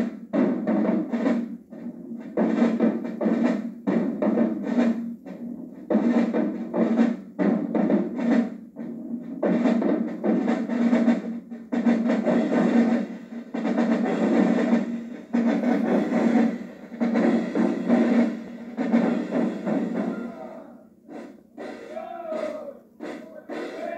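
Marching drumline of snare drums and marching bass drums playing a loud, fast cadence in short phrases separated by brief pauses.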